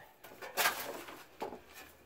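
Shovel scraping up loose dirt and tossing it into a hole: a gritty rush about half a second in, then a shorter one.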